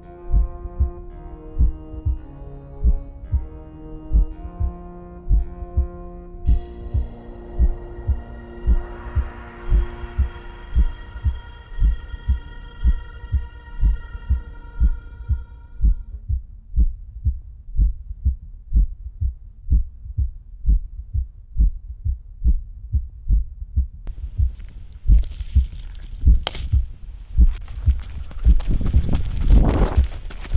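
Horror-style soundtrack: a steady, thumping heartbeat sound effect, a little more than once a second, under held, eerie music notes that fade out about halfway, leaving a low hum. A rising hiss swells in near the end.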